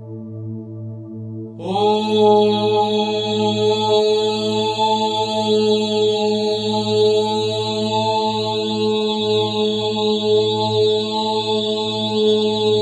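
A steady low drone, joined about a second and a half in by a voice chanting one long mantra syllable for the Muladhara chakra, held on a single steady pitch to the end.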